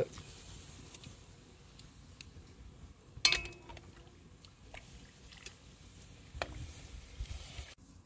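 Boiling water ladled over a hanging duck in a cast-iron wok: quiet trickling and dripping. About three seconds in, a sharp metal clink with a short ring, the steel ladle against the wok.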